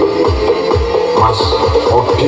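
Dance music played loud through a large stacked sound system of bass cabinets and top cabinets. It has rapid deep bass hits, each sliding down in pitch, about three or four a second, under a busy midrange melody.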